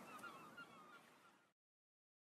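Faint wash of sea surf with bird calls over it, fading out and cutting to silence about one and a half seconds in.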